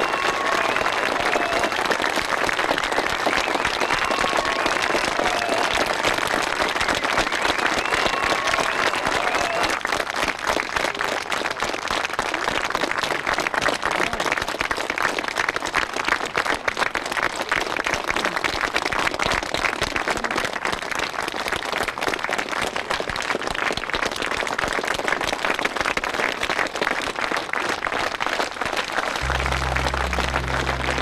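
Audience applauding, with dense, steady clapping throughout. During the first ten seconds a few short pitched sounds rise and fall over the clapping.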